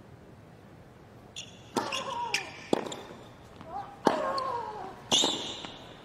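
Tennis rally on a hard court: about four sharp racket-on-ball strikes roughly a second apart, starting with the serve. Most strikes come with a short grunt from the player that falls in pitch.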